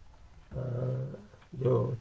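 A man's low, drawn-out hesitation hum held at one pitch for under a second, then he goes on speaking.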